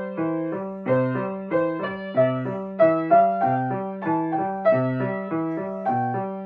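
Acoustic grand piano being played: notes and chords struck in a steady, even rhythm, about one every two-thirds of a second, each ringing and dying away over a recurring low bass note.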